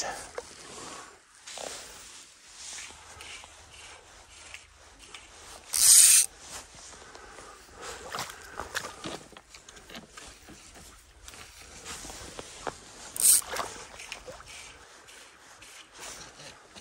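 Rustling and rubbing handling noise from clothing and fishing gear close to the microphone, with two brief loud swishes, one about six seconds in and one about thirteen seconds in.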